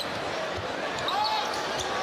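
Basketball dribbling on a hardwood court over a steady arena crowd murmur.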